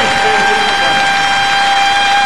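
A live orchestra holds one long steady note, brass-led, over applause from the audience.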